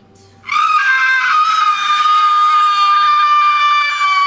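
A long, high-pitched human scream, let out on cue in a group relaxation exercise. It starts about half a second in and is held steady on one pitch, sinking slightly.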